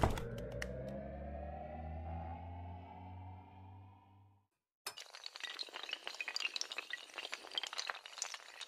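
Animated-logo intro sound effects. A sharp hit opens a rising swell over a low drone that fades away about four seconds in. After a brief silence, a long clattering shatter of breaking glass-like pieces starts and keeps going.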